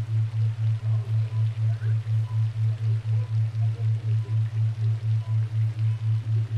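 A low, steady tone from a subliminal 'frequency' tone track, pulsing evenly about five times a second, with faint scattered sounds beneath it.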